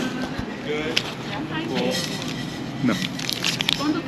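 Indistinct voices talking over the background noise of a shop, with a few sharp clicks.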